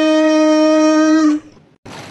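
A voice holding one long sung note, steady in pitch, that stops about one and a half seconds in; a faint hiss follows near the end.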